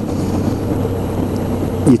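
Suzuki V-Strom DL650 V-twin engine running steadily at road speed, fitted with an aftermarket Akrapovic exhaust, with wind rushing over the moving bike. It is a constant, even drone.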